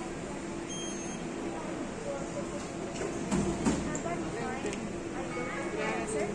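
Airport check-in hall ambience: a steady machinery hum under murmuring background voices, with a couple of sharp knocks about three and a half seconds in.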